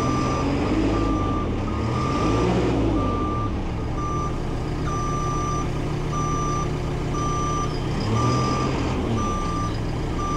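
JCB telehandler's backup alarm beeping about once a second while its diesel engine revs up and down twice: it is in reverse but does not move, which is put down to a possible transmission fault after the machine lay on its side for so long.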